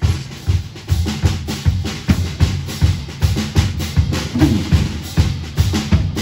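Live band starting a song on a drum-kit groove: bass drum and snare keeping a steady beat of about two and a half hits a second, with other instruments underneath.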